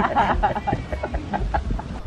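Choppy, high-pitched human voices: a rapid run of short laughing or whooping sounds.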